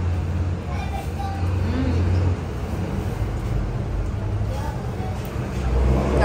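Street traffic noise from cars on the road right beside the eatery: a steady low rumble with faint voices in the background.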